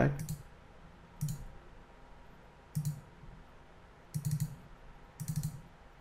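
Computer mouse clicks: a handful of short, separate clicks spread over a few seconds, the last two a little longer, like quick double clicks.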